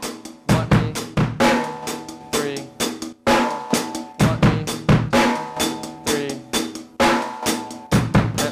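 Acoustic drum kit playing a rock groove: a steady sixteenth-note hi-hat pattern with snare backbeats and bass drum hits, including bass drum on the "one-e" of beat one.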